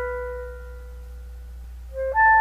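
Solo clarinet holding a single note that fades away over the first half-second, then a brief pause with only a faint low hum before the next note starts at the very end.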